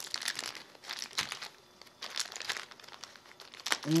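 Small plastic packet crinkling in the fingers as it is handled and opened, in irregular crackles with a brief lull in the middle.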